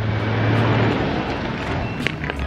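A motor vehicle passing on the road: a rush of engine and tyre noise that swells in the first second and then eases off.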